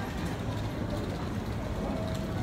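Steady background din of a busy airport terminal concourse: a low, even hum with distant crowd noise.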